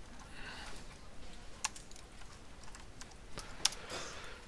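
Computer keyboard typing: a quiet run of scattered key clicks, with two sharper clicks about a second and a half in and near the end.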